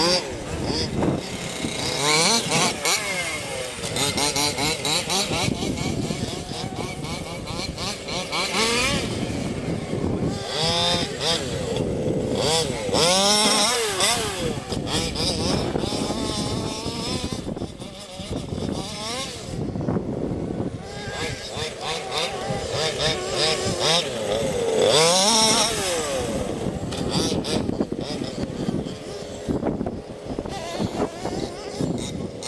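Large-scale radio-controlled off-road car's motor revving up and down in repeated bursts as the car accelerates and slows while driving over grass.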